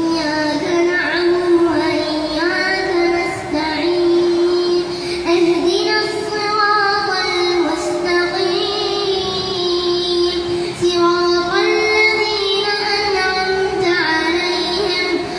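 A child's voice reciting the Quran aloud in melodic chant while leading prayer as imam, sounding through a microphone. The recitation goes in long held notes with ornamented turns between short pauses.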